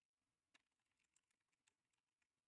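Near silence with faint computer keyboard typing, a scatter of soft key clicks as a name is entered into a spreadsheet.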